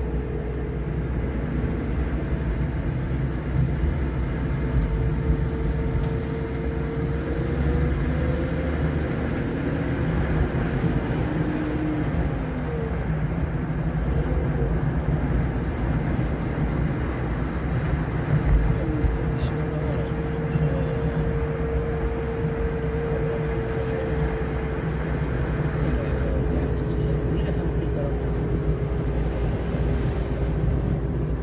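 A car driving at a steady speed, heard from inside the cabin: a continuous rumble of engine and tyres on the road, with a faint hum that drifts slightly in pitch as the speed changes.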